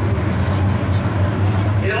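A field of IMCA Modified dirt-track race cars with V8 engines running slowly together as they line up for a restart, making a steady low engine rumble.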